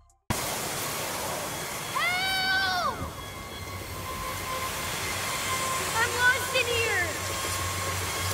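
A steady hiss of wind over a field of tall grass, with a low hum beneath it. A voice calls out twice through it: once about two seconds in, held for about a second, and again around six seconds in.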